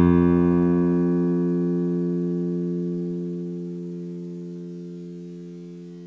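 Bass guitar sound from a notation-software playback, holding one long F note that is struck right at the start and slowly fades away.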